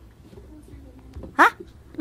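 A short break in the talk with faint room noise, then one brief rising vocal "ha" about one and a half seconds in.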